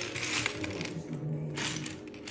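Loose plastic LEGO bricks clattering as they are rummaged through in a pile. The clatter comes in two spells, with a short lull just after a second in.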